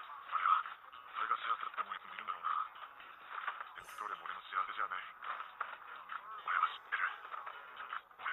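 Japanese dialogue from an anime episode playing in the background, thin-sounding with the highs cut off and quieter than a voice close by. A faint click about four seconds in.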